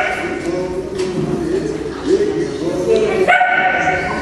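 A small dog yipping and whining in excitement while working, with a louder, higher cry a little over three seconds in.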